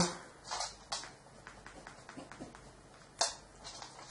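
Faint, brief rustles of a small paper card being handled, the loudest a little after three seconds in.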